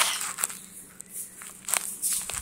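A few soft knocks and some rustling from someone walking while carrying a phone: footsteps on a hard floor and handling noise.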